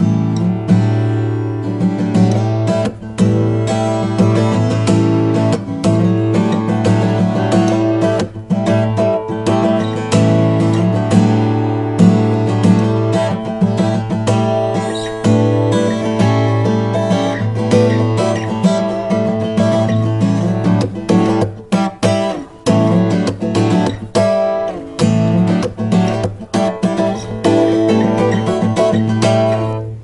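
Yamaha FGX720SCA acoustic guitar, with a solid spruce top and mahogany back and sides, played without a break: chords and plucked notes that ring on.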